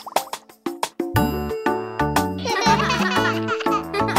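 Children's-song backing music. It opens sparsely with a few plucked notes and a short rising slide, and the full backing with bass comes in about a second in. A busy warbling burst sits over the music near the end.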